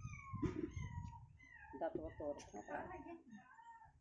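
A drawn-out, high-pitched call about a second long, falling slightly in pitch, followed by voices speaking.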